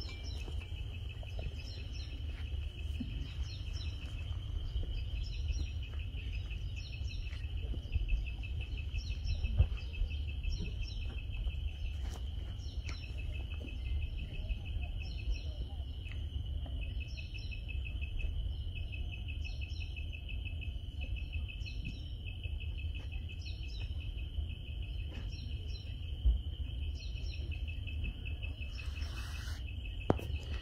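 Insects trilling steadily at a high pitch, with a short higher chirp repeating about every second or so, over a low outdoor rumble. A couple of faint knocks are also heard, and a brief rustle near the end.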